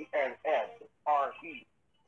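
Speech over a telephone line, thin-sounding, with little above the voice's middle range, in quick phrases with a short pause near the end.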